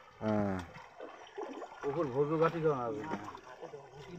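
Men's voices talking in two short stretches: a brief utterance at the start and a longer one in the middle.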